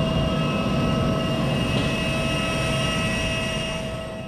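Airliner jet-turbine noise: a steady low rumble with several high, steady whining tones over it, easing slightly near the end.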